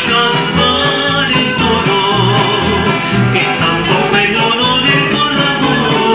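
Recorded band music: a bass line moving note to note under guitars, with a steady drum beat.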